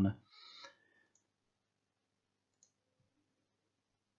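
Two faint computer mouse clicks, about a second and a half apart.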